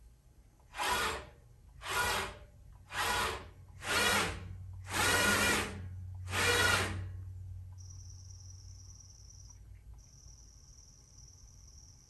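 Leadshine EL8 servo motors driving a gantry laser cutter's axes through six short moves about a second apart, each a brief rush of motion noise lasting about half a second, over a low steady hum. After the moves stop, a faint high whine comes and goes.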